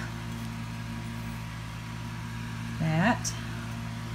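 Steady low mechanical hum with a thin steady high tone over it, unchanging throughout. A short voiced sound, like a murmured 'um', comes about three seconds in.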